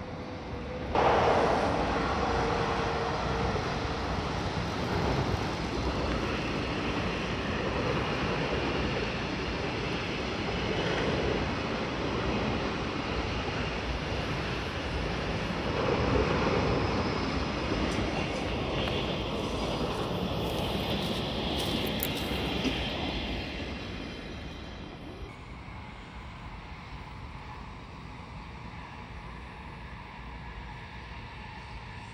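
A train running past on the nearby railway line. The noise starts abruptly about a second in, holds steady for around twenty seconds, then fades away.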